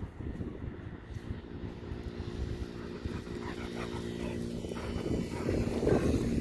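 A distant engine drone, steady in pitch, over a constant low wind rumble on the microphone. The rumble grows louder and rougher near the end.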